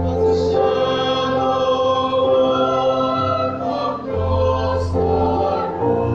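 Church choir of men and women singing a slow communion hymn in long held notes, over an accompaniment whose low bass note shifts every second or two.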